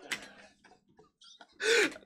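Mostly quiet, with a few faint clicks, then a short burst of a man's voice shortly before the end.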